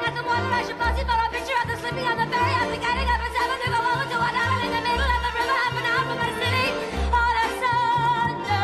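Musical-theatre pit orchestra playing a high melody with vibrato over low bass notes that come about every two seconds.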